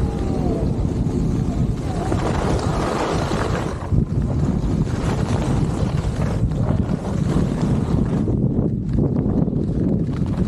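Wind rushing over a skier's camera microphone during a fast downhill run, mixed with the skis sliding and scraping over packed snow.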